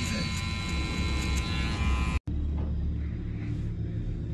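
Cordless hair clipper buzzing steadily as it cuts, with voices in the background. It stops abruptly about two seconds in, leaving a low hum.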